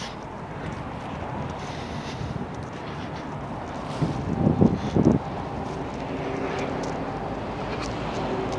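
Wind buffeting the microphone over a steady low engine hum, with two short louder sounds about four and a half and five seconds in.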